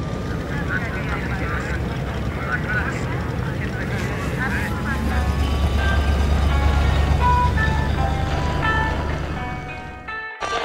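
An old station wagon's engine running and growing louder about halfway through as the car drives off, with faint voices over it. A few soft separate musical notes come in during the second half and fade out at the end.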